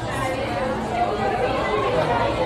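Overlapping chatter of many voices in a busy restaurant dining room, with no single voice standing out.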